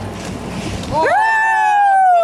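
Boat and water noise for about a second, then the background cuts out abruptly and a loud high pitched gliding tone, an edited-in sound effect or music, takes over and holds, falling slightly in pitch.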